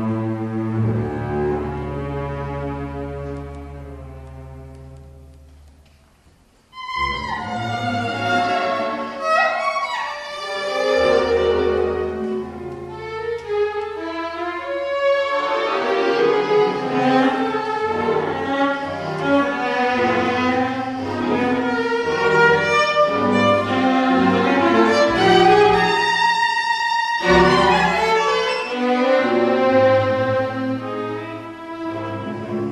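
Solo viola with string orchestra playing live. A low held string chord fades almost to nothing over the first six or so seconds, then the strings come in suddenly and loudly with busy, shifting high and middle lines over deep bass notes.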